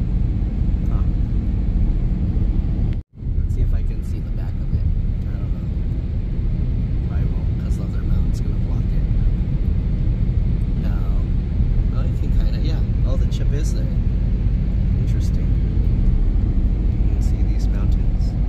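Steady low road and tyre rumble inside the cabin of a Tesla Cybertruck cruising at highway speed, with no engine note from the electric drive. The sound cuts out for a moment about three seconds in.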